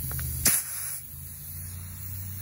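An air compressor's chuck is pushed onto a motorcycle tire's valve stem: a sharp snap about half a second in, then a short hiss of air that stops about a second in.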